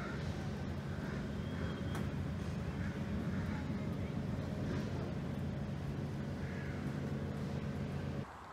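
A steady low mechanical hum, like a motor running, with faint scattered higher sounds over it.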